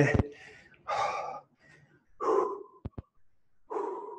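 A man breathing heavily, three long, audible breaths a second or so apart, winded as he recovers from a hard interval of leg exercise. Two small clicks come between the second and third breath.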